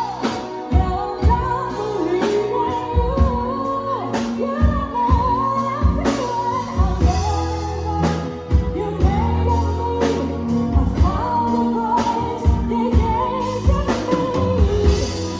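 Live band playing a pop ballad: a singer carries a wavering melody over drum kit, keyboards, electric guitar and bass, with steady drum hits throughout.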